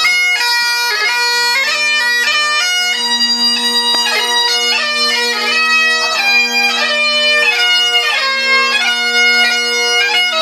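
Great Highland bagpipe playing a tune: a steady drone underneath the chanter's melody, which is broken up by quick grace notes.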